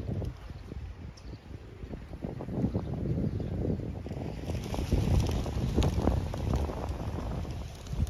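Wind buffeting the phone's microphone in uneven gusts, a low rumble that grows stronger about halfway through.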